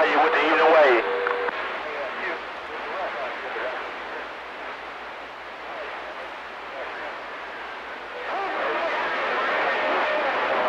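CB radio receiving a weak one-watt station: a distant voice comes through muffled and unintelligible under steady static hiss, with a steady whistle under it for the first second and a half. The signal fades down in the middle and strengthens again near the end.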